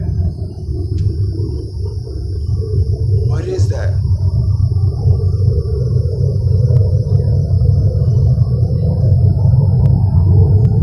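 A loud, low droning rumble with a wavering tone above it, growing gradually louder: the unexplained 'strange trumpet sound in the sky', heard with no aircraft in sight.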